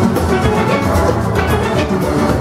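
A large steel band playing live at full tilt: many steel pans struck with sticks in quick, even strokes, with a low bass line and percussion underneath.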